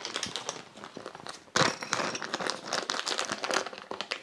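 Small clear plastic bag crinkling as it is handled to take a small part out: a dense run of crackles with a short break about a second and a half in, louder after it.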